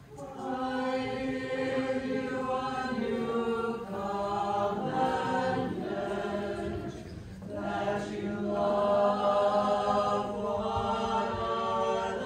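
A choir singing a slow hymn in long held phrases, with short pauses about four and seven and a half seconds in.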